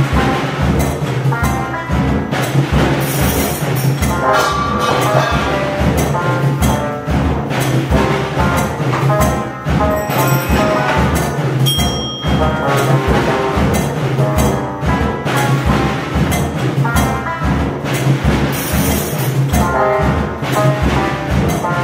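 Rhythmic music from a home-built mechanical music machine driven by hand: steady drum strikes with cymbals and tuned percussion over a held low note.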